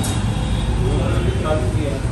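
Steady low rumble, with faint voices talking in the background.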